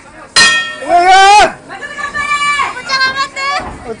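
Loud shouting voices: a sudden yell about half a second in and a long rising shout around one second, followed by several shorter calls.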